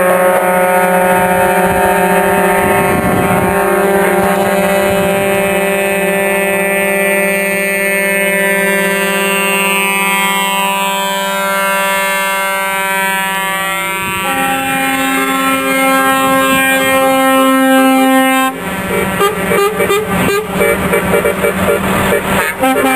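Truck air horns blaring as a truck convoy passes, several horns held at once so their tones sound together as a chord. The pitches slide as a truck goes by, the chord changes about fourteen seconds in, and near the end the horns break into short, choppy blasts.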